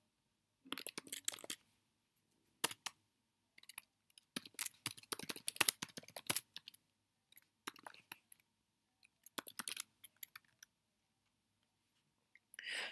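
Computer keyboard typing: several short runs of keystrokes with pauses between them.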